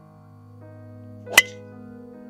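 A single sharp crack of a driver striking a teed-up golf ball, about a second and a half in, over soft piano background music.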